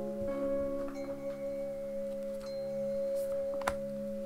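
Soft ambient background music of long, steady bell-like tones, with a single light tap of an oracle card being laid down on the table near the end.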